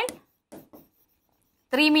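Brief faint scratching of a stylus writing on an interactive display screen, about half a second in.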